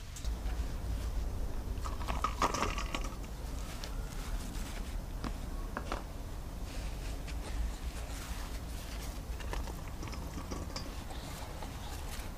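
Rustling leaves and small snaps and crackles of tomato plants being handled as cherry tomatoes are picked, over a steady low rumble.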